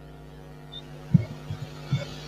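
A low steady hum, with two brief soft thumps, one about a second in and one near the end.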